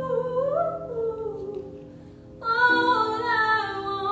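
A female soloist singing a slow melody over a choir humming a steady, sustained chord. Her phrase fades away about halfway through, and a louder new phrase comes in soon after.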